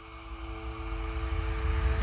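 Logo-intro sound effect: a whoosh that swells steadily louder over a held low chord, building to the reveal and cutting off sharply at the end.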